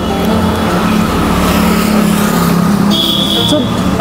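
Steady road traffic noise, with a motor vehicle's engine running close by as a continuous low drone. A brief high-pitched tone sounds about three seconds in.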